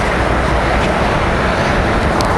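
Steady outdoor rushing noise with a strong low rumble, loud and even throughout.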